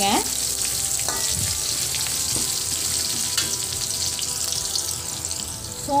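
Hot oil sizzling steadily as garlic cloves and seeds fry in an aluminium wok, with a few light scrapes of a perforated steel spatula stirring them.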